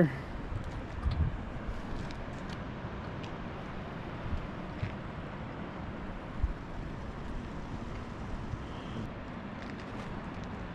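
Steady, even rumble of a boat running slowly, with a few soft low thumps.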